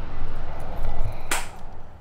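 Rumbling handling noise and wind on the microphone of a handheld camera being moved, with one sharp click about a second and a half in, after which the sound drops away.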